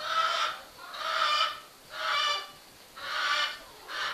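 A barnyard bird calling four times, about a second apart, each call a short held note.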